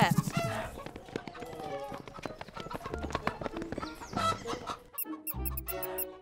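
Cartoon background music with animal sound effects as a hen, a chick and a guinea pig scurry about, ending in a run of quick ticks.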